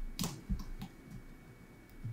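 A few light clicks and taps of fingers pressing a jumper wire into a plastic solderless breadboard, the sharpest just after the start, then only faint taps.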